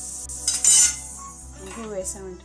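Hot oil sizzling in a pan with asafoetida just added, with a louder burst of sizzling and pan noise about half a second in that lasts about half a second. Background music plays underneath.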